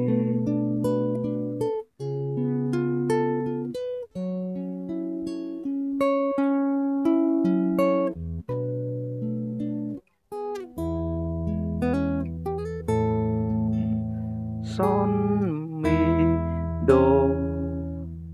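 Guitar accompaniment in A major, chords picked note by note and left to ring, with short breaks about 2, 4 and 10 seconds in and fuller bass notes in the second half. This is the high passage of the song's accompaniment.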